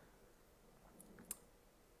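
Near silence: room tone, broken by two faint clicks about a second in, the second a little louder.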